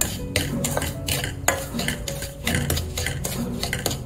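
A wooden spatula scraping and stirring dry semolina (rava) around a non-stick kadai as it is roasted. The strokes repeat evenly, about two to three a second.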